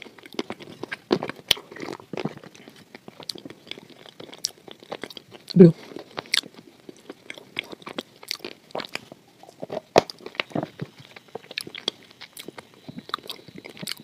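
Close-miked chewing and crunching of milk-soaked pieces, with many small irregular mouth clicks, and a short hum from the eater about five and a half seconds in.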